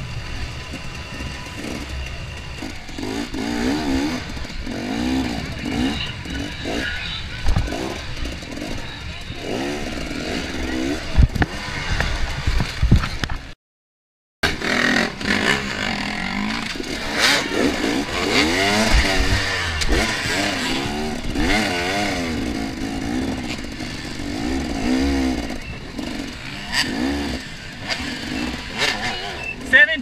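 KTM XC-W 250 two-stroke dirt bike engine, revving up and down again and again as the bike is ridden hard over rough ground, with clatter from the bike. The sound cuts out for about a second around the middle.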